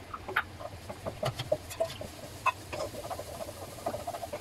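Wooden spatula scraping and tapping against a nonstick wok while sliced onions are stir-fried, making a string of irregular scrapes and light knocks over a low steady hum.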